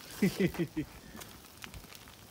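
A man laughs briefly near the start, his voice falling in pitch. Then comes faint crackling and sizzling with a few scattered clicks from the top sirloin roasts searing on a grill grate over burning red oak.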